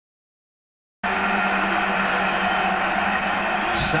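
Steady stadium crowd noise from a televised football game, coming through a TV's speaker with a low hum under it. It cuts in suddenly about a second in, after silence, and a brief click comes near the end.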